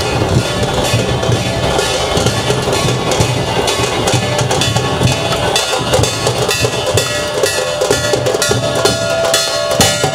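Drums played loudly in a fast, dense, unbroken beat, the drumming of a street parade band.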